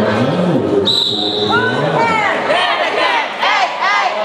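A short, steady, high tone sounds about a second in. It is followed by a small dog barking rapidly and repeatedly in high-pitched yaps, over the murmur of a crowded hall.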